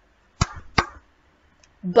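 Two hand claps about half a second apart, the signal for a wild animal (tiger) in a clapping game.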